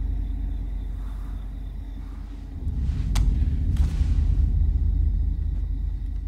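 Low, steady rumbling drone of a film soundtrack, with a single sharp click about three seconds in and a short rush of noise just after.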